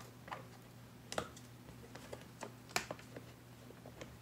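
Scattered light plastic clicks and taps from handling a Deebot N79 robot vacuum's brushes and parts. The clicks come irregularly, about seven or eight of them, with the sharpest about three quarters of the way through.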